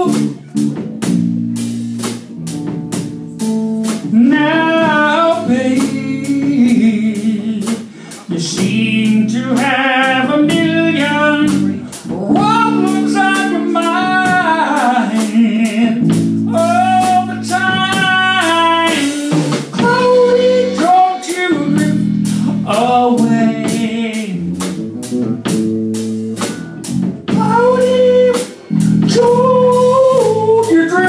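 A live soul ballad: a man singing over electric guitar chords, with a drum kit keeping a steady beat.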